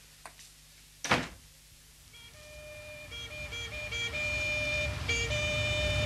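A heavy thump about a second in, then a police car's two-tone siren starts, alternating a high and a low note over engine rumble and growing steadily louder.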